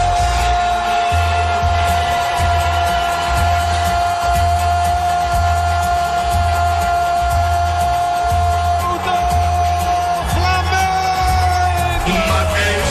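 Radio goal celebration: music with a steady beat under one long held note, which breaks briefly near the end.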